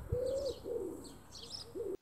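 A pigeon cooing in a run of low, rounded notes, with small birds chirping higher up. The sound cuts off suddenly near the end.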